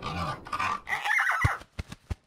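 A string of breathy, animal-like grunts and snorts, then three short low thumps near the end.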